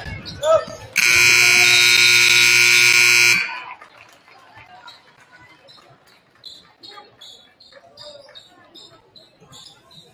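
Gym scoreboard horn sounding once for about two and a half seconds, starting about a second in, as the game clock hits zero to end the first half. A sharp thump comes just before it, and after it short high squeaks of shoes on the court come and go over faint crowd noise.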